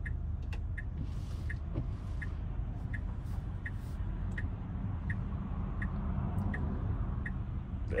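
Tesla turn-signal indicator ticking evenly, about three ticks every two seconds, over a low steady rumble in the car's cabin.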